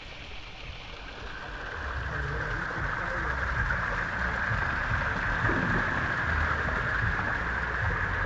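Spring water splashing as it pours over rocks and falls into a pool, a steady rushing that grows louder over the first few seconds, with a low rumble underneath.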